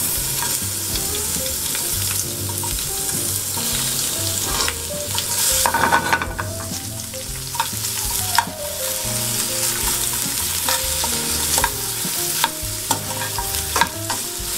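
Sliced onion sizzling in olive oil with browned garlic in a metal frying pan, tossed with metal tongs that click against the pan now and then.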